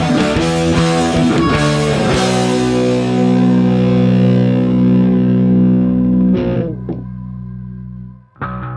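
Distorted electric guitar playing a fast riff, then a chord left ringing from about two seconds in. A little after six seconds the sound drops to a quieter, lower held tone.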